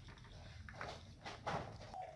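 A hand moving through a heap of small wet fish in an aluminium bowl, giving a few faint, scattered clicks and rustles.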